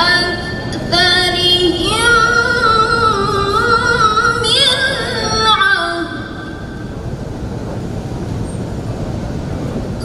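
A woman's melodic Quran recitation (tilawah), long held phrases with ornamented, wavering pitch, breaking off about six seconds in. Steady background noise fills the pause that follows.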